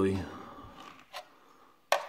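The last syllable of a man's speech, then quiet room tone broken by a faint tick about a second in and a sharp single click just before the end.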